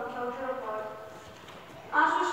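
A voice speaking lines, trailing off about halfway through into a quieter pause.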